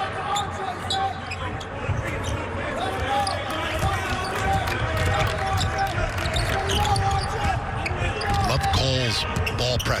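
Basketball dribbled repeatedly on a hardwood court, with players' voices calling out.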